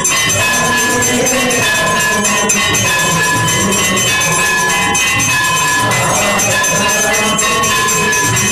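Temple bells and clanging metal cymbals ring continuously in a dense, loud din of rapid strikes, the steady aarti accompaniment in a Hindu temple.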